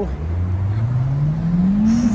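A loud car engine accelerating on the street, its note rising steadily in pitch and levelling off near the end.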